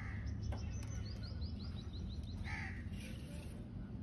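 Birds calling: a rapid run of short high chirps, several a second, and two louder calls about two and a half seconds apart, over a steady low rumble.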